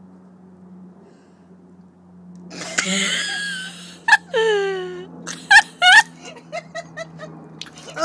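A woman laughing, starting about two and a half seconds in, then a falling whimper and short breathy cries and clicks as she flushes saline through her nose with a syringe-style nasal rinse. A steady low hum runs underneath.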